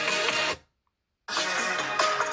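A song with guitar playing through an iPhone 8 Plus's built-in speaker cuts off about half a second in. After a silent gap of under a second, the same song starts again from an iPhone SE (2020)'s speaker.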